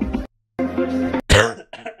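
Electronic dance music plays, cuts out for a moment and starts again, then a man coughs twice near the end, the first cough the loudest.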